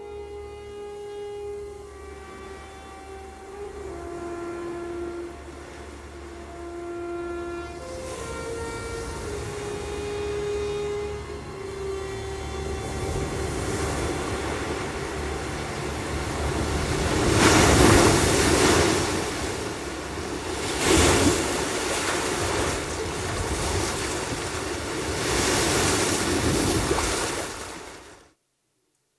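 A slow, sustained orchestral melody fades out while the sound of surf rises in. Waves roll in and break on a beach in three big surges, the loudest about two-thirds of the way through. The sound then cuts off abruptly.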